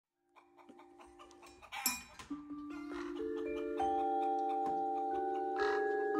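Vibraphone struck with soft mallets, single notes entering one after another and left ringing, so they pile up into a sustained chord that grows louder.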